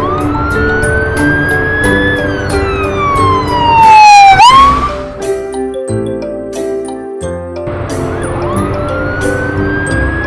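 A cartoon ambulance siren wailing in slow rises and falls over cheerful background music with a steady beat. It climbs for about two seconds and falls again, then swoops sharply up and is loudest a little before the middle. It drops out for a few seconds and starts climbing again near the end.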